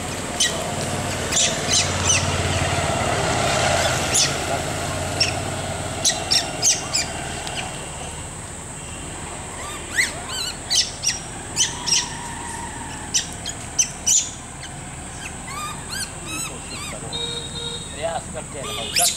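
Birds chirping: many short, sharp calls scattered through, some arching up and down in pitch, over a steady high whine. A low rumble runs under the first four seconds.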